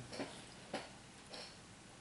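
Three faint, short clicks about half a second apart in a quiet room, the middle one the sharpest.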